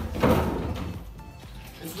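Wheeled swivel office chair being scooted around on a hard floor, with a loud knock right at the start and a noisy rattling clatter just after.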